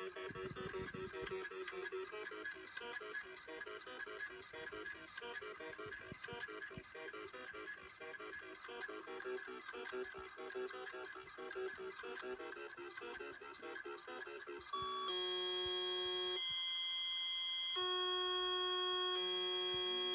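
An Apple IIe plays a two-voice Electric Duet tune through its speaker while the Disk II drive's head arm steps back and forth in time with the notes, clicking along with the music. About fifteen seconds in, the tune gives way to long held tones that jump in pitch in abrupt steps. The program seems to have crashed: the tune's end value is not set, so it plays on into other data.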